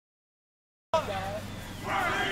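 Silence, then about a second in the sound of an outdoor field cuts in abruptly with short calls from people's voices, louder near the end.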